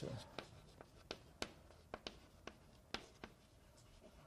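Chalk on a blackboard: faint, sharp, irregular taps and short scratches as someone writes, about two or three a second.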